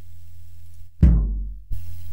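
A kick drum sample played back once. A deep thud about a second in booms and decays for about half a second, then cuts off abruptly where the sample has been trimmed.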